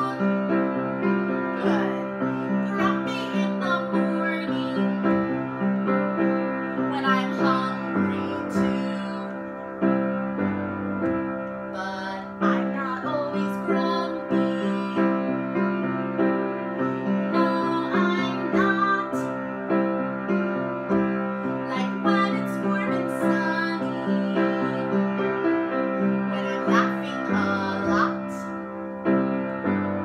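A woman singing a simple children's song in short phrases meant to be echoed back, accompanying herself on an upright piano with steady chords.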